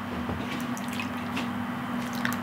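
Small drips and splashes of water in a hot tub, over a steady low hum.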